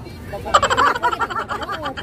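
Several women's voices breaking into excited laughter and shrieks about half a second in, in quick choppy pulses.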